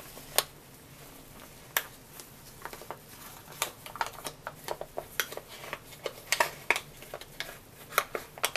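Plastic resist insert crinkling and clicking as it is pulled out of a wet felted wool vessel by hand. Scattered sharp clicks and crackles, sparse at first and busier in the second half.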